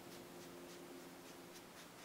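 Very faint soft dabbing and rubbing of a makeup sponge on facial skin, a few light strokes a second, over a faint steady hum.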